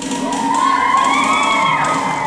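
Children cheering, carried by one long drawn-out shout that rises slightly in pitch, holds, and falls away near the end.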